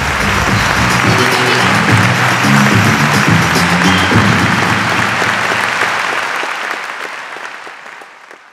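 Audience applause over the end of the intro theme music; the music stops about four seconds in and the applause fades out near the end.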